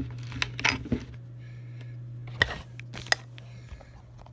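Small hard parts and a plastic packaging bag being handled: a few sharp clicks and light plastic rustling, the clicks loudest a little past halfway, over a steady low hum.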